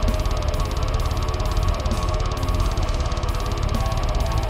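Heavily distorted extended-range electric guitar playing fast low-tuned metal riffing, dense and bass-heavy, over a rapid, even beat.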